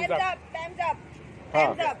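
Short bursts of people talking over a steady low hum of road traffic.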